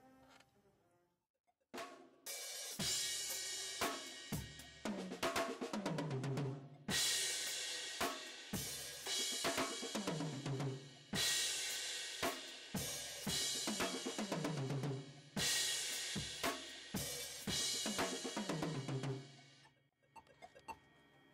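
Drum kit played in an inverted-paradiddle exercise, with snare, hi-hat and bass drum, and a cymbal crash with the bass drum about every two seconds. The playing starts about two seconds in after a brief silence.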